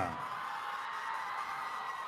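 Faint, steady background noise: an even hiss with a few faint steady tones running under it, and no voice or music.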